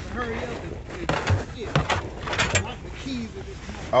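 Faint, indistinct talking with several sharp clicks and knocks.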